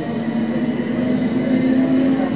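Class 455 electric multiple unit with its new Vossloh AC traction pack, heard from inside a carriage as it pulls away. The traction equipment gives a high-pitched whine over a low hum and running rumble, the hum rising slightly in pitch as the train gathers speed.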